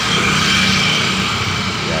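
Steady motor-vehicle engine noise from the street, a low hum under a wide traffic hiss, with a faint steady high whine.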